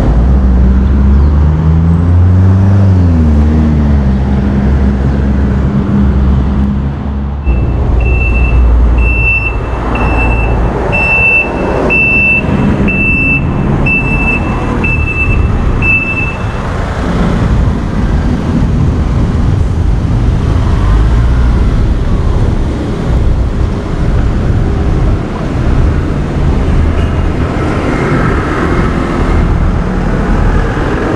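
Road traffic on a busy avenue. A vehicle engine passes close in the first seven seconds, its note rising and falling. From about eight seconds in, a high electronic beeper sounds about once a second for some eight seconds.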